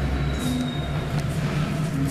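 A 1912 passenger elevator car travelling in its shaft: a steady low hum and rumble, with a brief thin high squeal about half a second in.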